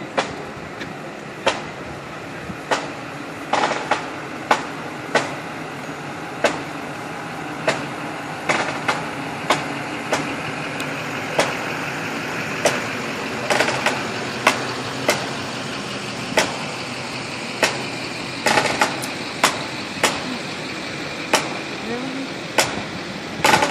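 Pickup truck engine running as it rolls slowly past, over sharp, uneven strikes about once a second.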